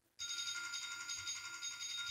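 A mobile phone going off with an electronic alert tone: a steady high, fluttering tone lasting a little over two seconds, starting just after the talk breaks off.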